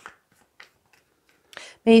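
Tarot deck being handled in the hands: a couple of short, faint card snaps and a soft swish. A voice starts speaking near the end.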